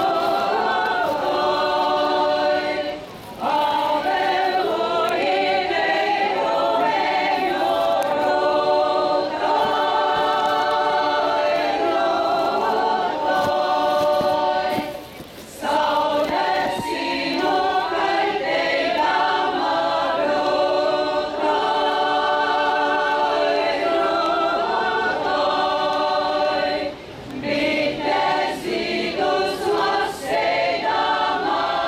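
A women's folk ensemble singing a traditional Latvian song a cappella in several voices, verse after verse, with short breaths between lines about 3, 15 and 27 seconds in.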